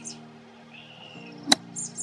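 A single crisp strike of a golf wedge hitting the ball off the grass on a half-swing pitch shot, about one and a half seconds in.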